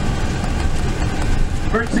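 Tour bus running, heard from inside the cabin as a steady low engine and road rumble; a man's voice starts again near the end.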